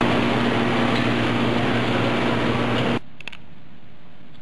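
Steady machinery and ventilation hum of a gear plant floor, with a low, even drone. It cuts off abruptly about three seconds in, leaving quiet room tone.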